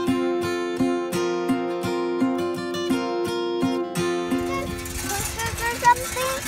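Strummed acoustic guitar background music, which cuts off about four seconds in to the steady, noisy rush of a moving bike, with a voice near the end.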